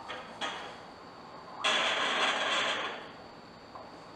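Plastic bottle of water-based lubricating gel squeezed: two light clicks, then a hissing squirt lasting about a second and a half as gel is pressed out for the Doppler probe.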